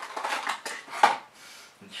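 Handling noise from small test loads being brought to the bench: rustling of a cardboard bulb box and clicks and clinks of a 12 V 21 W bulb with wire leads, with a sharp click about a second in.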